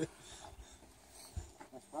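A lull of faint outdoor background with one soft low thump about a second and a half in, and a man's voice starting again at the very end.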